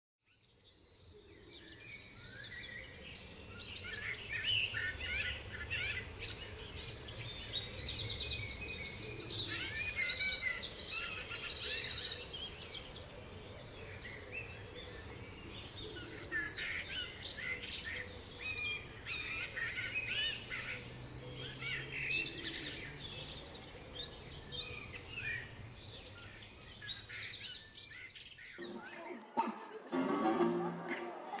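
Several birds singing and chirping, with rapid trills, over a faint low background rumble. The birdsong fades in over the first few seconds and cuts off suddenly near the end.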